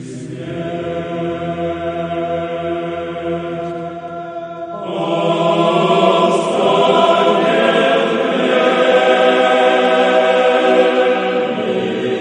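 Background choral chant: voices holding long sustained notes, the sound swelling fuller and louder about five seconds in.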